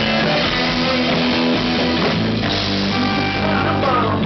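Live rock band playing an instrumental passage: electric guitar, bass guitar and drum kit, with maracas being shaken. The sound grows brighter about two and a half seconds in.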